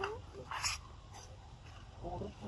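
A baby macaque gives a short, wavering whimpering call right at the start, followed about half a second in by a brief hissing burst, then a quieter stretch.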